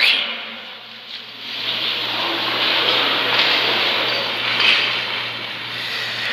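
Audience applause in a large hall, swelling about a second and a half in and then holding steady, over a faint steady electrical hum.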